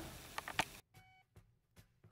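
Faint sound fading away with a few short clicks, then a brief faint beep about a second in, and then almost nothing.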